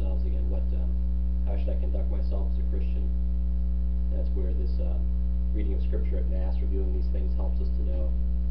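Loud, steady electrical mains hum with a stack of even overtones, running without change under faint, indistinct speech.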